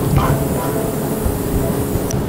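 Cardboard rustling and scraping as the flaps of a monitor's shipping box are folded open, over steady background music.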